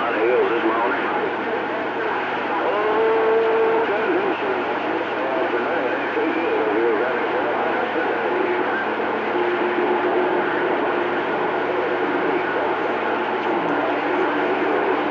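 CB radio receiver on channel 28 hissing with steady static, with unintelligible voices wavering through it. Brief steady tones sound about three seconds in and again around ten seconds.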